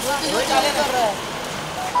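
Indistinct voices of people talking over steady street noise.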